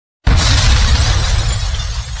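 Intro sound effect: a sudden loud hit about a quarter second in, with a deep boom under a crashing noise that slowly fades away.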